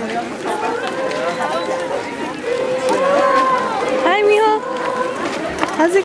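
A walking crowd talking at once, many voices overlapping, with some voices holding long, steady notes through the middle.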